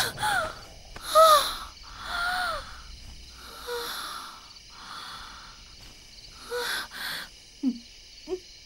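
A woman's strained cries and heavy, gasping breaths. There are two short rising-and-falling moans in the first two seconds, then a run of loud breaths, and a few short falling gasps near the end.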